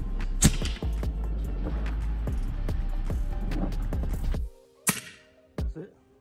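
Background music with a beat that cuts off about four and a half seconds in. Just after, a single sharp crack from a shot of a suppressed .25 calibre Edgun Leshy PCP air rifle, followed about half a second later by a duller knock.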